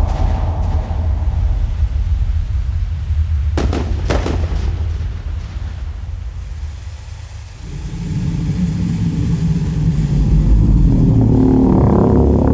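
Movie-trailer sound design: a deep, heavy rumble with two sharp booms about four seconds in. It sinks low around seven seconds, then sustained low tones swell up toward the end.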